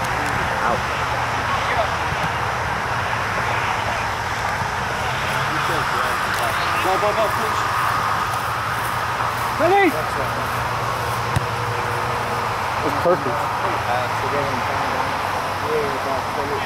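Outdoor background noise with a steady low hum, over which distant voices shout brief calls now and then, one louder call about ten seconds in.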